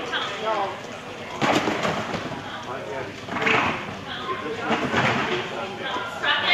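People's voices in a large indoor hall, with several louder, noisier bursts about one and a half, three and a half and five seconds in.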